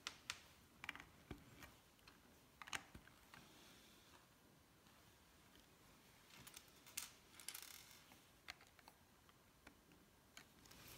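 Faint clicks of plastic LEGO pieces being picked from a loose pile and pressed onto a build: scattered clicks at first, a quiet stretch in the middle, then a short flurry of clicking and light rattling past the halfway point.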